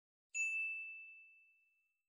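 A single bright ding, a chime sound effect, struck about a third of a second in and fading away over about a second.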